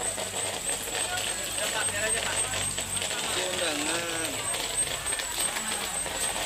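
Outdoor background noise with indistinct voices of people talking some way off, strongest a little past halfway. A low rumble fades out about halfway, and a thin, steady high-pitched whine runs underneath.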